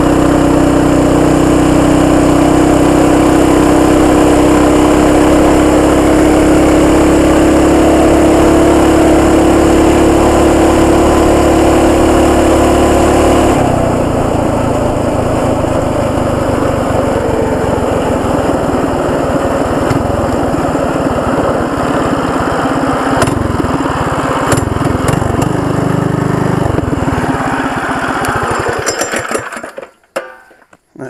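Predator 212 Hemi single-cylinder engine with an aftermarket header, driving a CVT torque converter on a Coleman CT200U mini bike, running at wide-open throttle with a steady high note near its roughly 45 mph top speed. About halfway through the note drops off suddenly as the throttle is released, leaving a rougher wind rush as the bike coasts down, with a few clicks, until it falls quiet at the very end.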